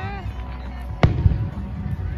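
Aerial fireworks shell bursting with one sharp bang about a second in, heard over a steady low rumble.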